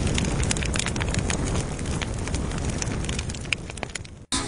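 Crackling fire sound effect: a steady rush of flames with many sharp pops and snaps, dying away near the end.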